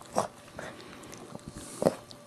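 Maltese mother dog licking and mouthing her newborn puppy, wet licking and mouth sounds, with two short louder smacks, one just after the start and a louder one near the end.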